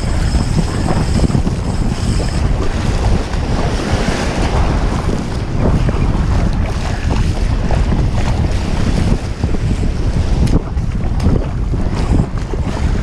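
Wind buffeting an action camera's microphone in a heavy, steady rumble, with small waves washing onto the sand at the shoreline.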